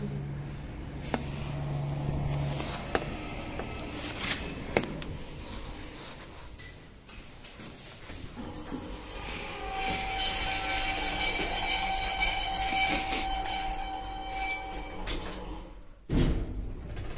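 A 1998 KMZ passenger lift in operation. A low hum and several sharp clicks come in the first few seconds. From about ten seconds in, a steady whine runs until shortly before the end.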